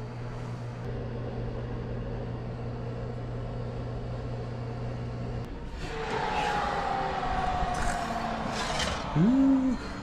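Countertop oven running with a steady low hum. About halfway through the hum cuts off, and handling noise follows with a faint falling squeal. A short voiced exclamation comes near the end.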